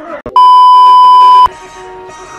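A loud censor bleep: a single pure steady tone about a second long that switches on and off abruptly, masking a swear word.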